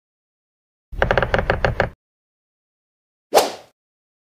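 Short video-editing sound effects between lesson segments: about a second of fast, evenly pulsing pitched sound starting about a second in, then a single sharp hit that dies away quickly near the end.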